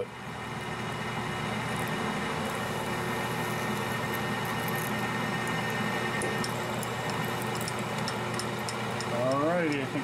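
Metal lathe running steadily while a twist drill in the tailstock bores a hole into the spinning part: a steady hum from the motor and drive with the scrape of the cutting and faint scattered ticks.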